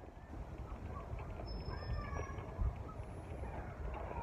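Outdoor background noise: a steady low rumble with a few faint, short high chirps.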